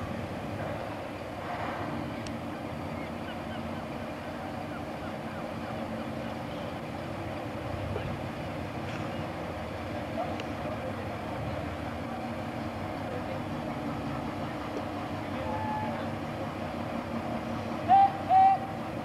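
Small industrial diesel shunter's engine running steadily as the locomotive moves slowly out of its shed, an even low drone.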